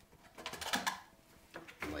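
Plastic clicking and scraping as a slit plastic wicking cup is pushed down into the middle hole of a stacked plastic bucket, a quick cluster of clicks about half a second in.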